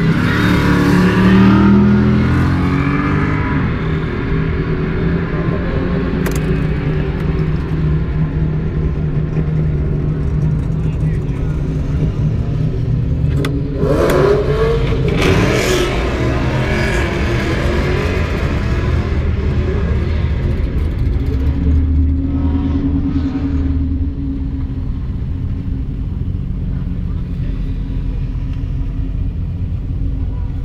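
Holden VZ SS Ute's 5.7-litre V8 running at low speed, heard from inside the cabin while the car is driven slowly. It picks up briefly at the start, and there is a short louder passage with shifting pitch about halfway through.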